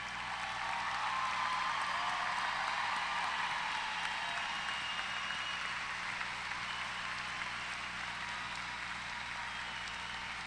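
Large audience applauding, swelling up over the first second and then continuing steadily while slowly easing off.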